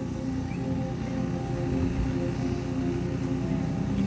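Electronic keyboard playing sustained chords, the held notes changing slowly.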